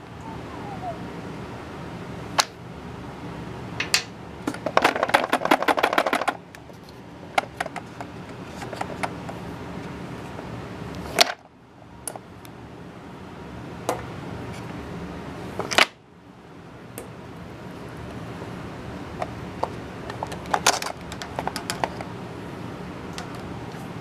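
Metal-cased batteries clicking and clattering against each other and the wooden rails as a cell is pulled from the bottom of a gravity-fed battery dispenser and the stack above drops down. A quick run of rattling clicks comes about five seconds in, with single sharp clicks scattered through, over a steady background hum.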